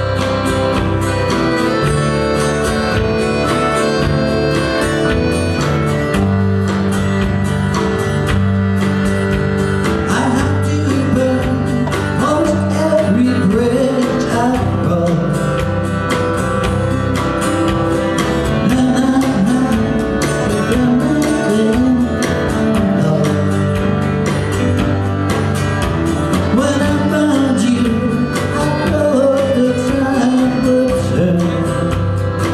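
Country band playing live: accordion, acoustic guitars, electric guitar and drums, with a lead melody that bends in pitch over the steady accompaniment.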